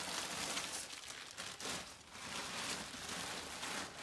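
Plastic shopping bags and clothing rustling and crinkling as they are handled, a continuous uneven rustle.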